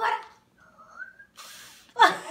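A toddler blowing a short puff of breath at birthday-cake candles, a brief airy hiss near the end, after a faint high rising squeak.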